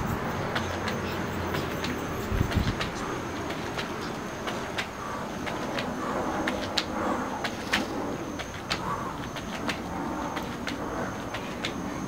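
Sneakers landing and scuffing on an exercise mat laid over concrete during repeated squat jumps, as a string of short, irregular taps over steady outdoor background noise with a faint high hum.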